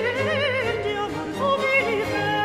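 Countertenor singing a baroque opera aria with a strong vibrato, the line dipping and leaping, accompanied by a baroque string orchestra.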